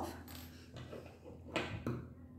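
Faint handling noise of hands moving a crocheted yarn piece and reaching for scissors, with one short rustle about one and a half seconds in.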